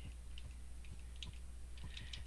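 Faint, irregular light clicks from desk computer controls, a handful over two seconds, over a low steady hum.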